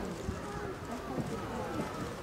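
Several voices chattering over one another in the background, with no clear words.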